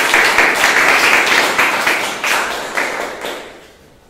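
Audience applauding, many hands clapping together, dying away about three seconds in.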